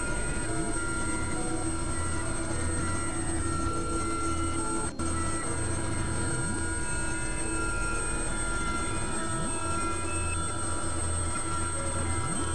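Experimental electronic drone music: layered sustained synthesizer tones at several steady pitches, squeal-like high lines over a pulsing low hum, with scattered short blips and a few sliding tones. The sound cuts out briefly about five seconds in.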